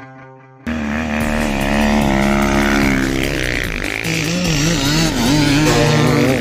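A short fading tail of music, then a sudden cut about a second in to an enduro dirt bike's engine revving, its pitch rising and falling repeatedly under the throttle, with a hiss of gravel and wind underneath.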